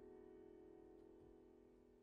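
A held piano chord slowly dying away to near silence, with a faint click about halfway.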